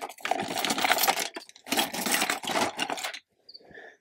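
Hard objects scraping and clattering as they are handled, in two spells of about a second and a second and a half, with a short gap between.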